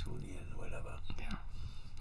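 A soft, breathy whisper close to a studio condenser microphone, with no full voice.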